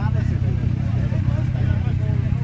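A 1953 Matchless motorcycle engine running steadily at an even speed, with no revving, amid the chatter of people standing around.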